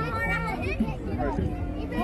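Crowd babble: children and adults talking over one another, no single voice standing out.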